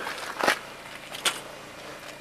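Footsteps on gravel: two brief crunches, about half a second and just over a second in, over a faint steady outdoor background.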